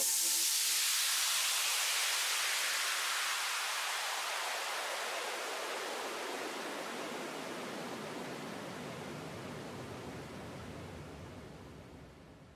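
Electronic white-noise sweep closing a dance mix: a hiss that sinks from bright and high to lower and darker while steadily fading away.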